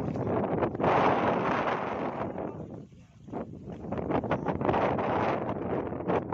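Gusty wind on the microphone mixed with splashing from a large hooked tuna thrashing at the side of a small fishing boat. The noise dips briefly about three seconds in.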